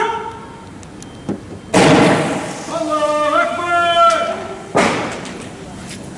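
Two loud bangs about three seconds apart, each trailing off slowly, from riot-police tear gas rounds being fired; a man shouts between them.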